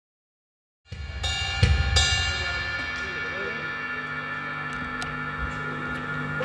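Rock drum kit being struck: after a second of silence, two cymbal crashes with a heavy low drum hit about one and a half and two seconds in, the cymbals ringing on and dying away over a steady low hum.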